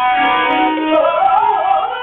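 Rajasthani folk song: a wavering, ornamented vocal melody over steady held instrumental tones with plucked strings.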